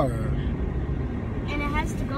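Moving car's cabin noise, a steady low rumble of road and engine with a low hum that fades about a second in. Near the end a woman gives a brief wordless cry.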